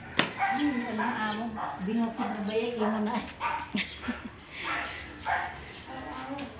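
A dog barking, mixed with people talking, with a sharp click just after the start.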